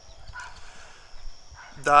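Quiet outdoor ambience with one brief, faint animal call about half a second in; a man's voice starts just before the end.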